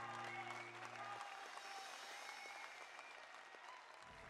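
Faint audience applause in a large hall. The held chord of the intro music stops about a second in.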